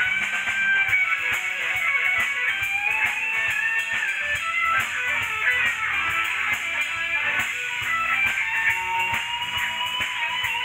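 Live band music with an electric guitar playing a wavering melody over drums.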